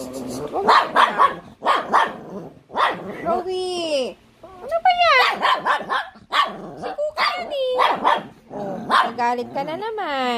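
Small fluffy dogs barking over and over in short sharp barks, mixed with several drawn-out whining yelps that slide down in pitch.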